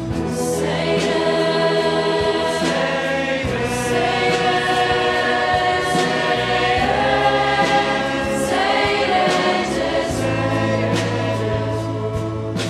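Mixed choir of men's and women's voices singing a Catholic worship hymn, with long sustained chords.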